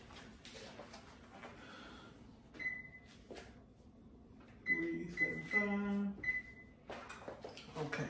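Oven control panel beeping as the temperature is keyed in for preheating to 375: one short high beep, then a quick run of several more beeps of the same pitch a couple of seconds later.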